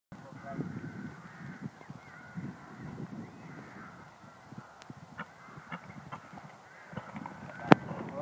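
Irregular muffled thuds with faint calls in the background, a few small clicks, and one sharp loud knock shortly before the end.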